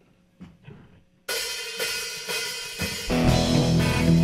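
Quiet for about a second, then a live rock band's drum kit comes in suddenly with crashing cymbals, starting the song. About three seconds in, the bass and the rest of the band join and the full band plays.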